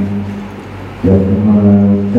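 A man's voice through a handheld microphone and PA holds one long, steady drawn-out sound for about a second, starting about a second in. Before it there is a short lull in which a low hum from the sound system remains.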